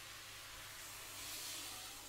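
A soft, steady hiss from a saucepan of onions, leeks and peppers cooking down on a gas hob. It swells slightly midway as chicken stock is poured in from a steel jug.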